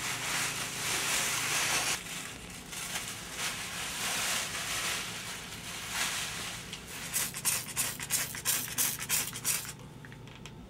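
Plastic bags and sheeting rustling and crinkling as they are pulled off wrapped, still-damp clay totems, ending in a quick run of sharp crinkles in the last three seconds.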